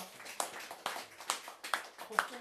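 A small audience clapping sparsely: a handful of separate, uneven hand claps about every half second.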